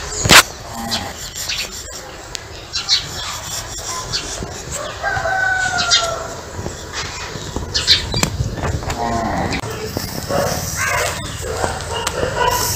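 Animal calls: one long, slightly falling call about five seconds in and a shorter one later. A sharp knock just after the start is the loudest sound.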